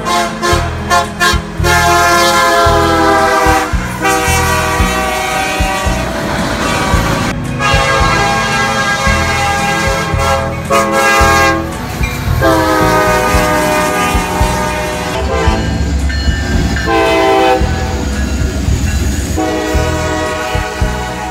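Diesel locomotives' multi-chime air horns blowing a series of long blasts over the low rumble of passing trains. The horn chord breaks off and changes abruptly several times as different locomotives' horns follow one another.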